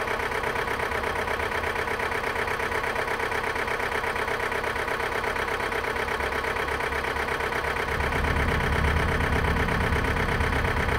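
An engine idling steadily with an even, pulsing hum; its low rumble grows louder about eight seconds in.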